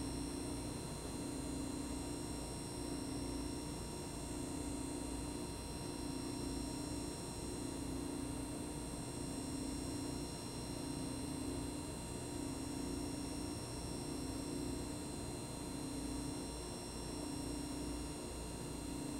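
Steady electrical hum and hiss of room tone, with a low hum that swells and dips every couple of seconds and a few faint steady high whines.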